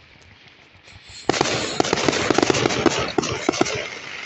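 Fireworks: fairly quiet at first, then about a second in a sudden, loud burst of rapid crackling pops that keeps going.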